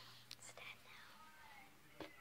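Near silence, with a faint whisper and a light click.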